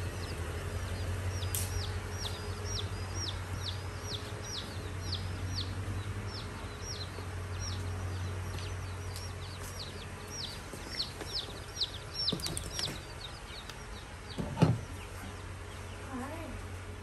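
Day-old chicks peeping inside a cardboard shipping box: a steady run of short, falling high chirps, about two a second. A steady low hum runs underneath, and a few knocks from the box being handled come near the end.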